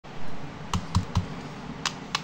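Plastic Rubik's cube clicking as its layers are turned: four sharp clicks, three close together about a second in and one near the end, after a short low bump at the start.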